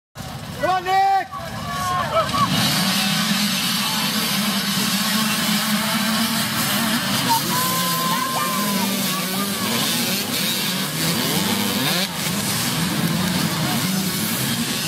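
A pack of small youth dirt bikes launching off the start line and racing past together, many little engines running at once in a dense, steady drone. A short high-pitched call comes near the start, with spectator voices under the engines.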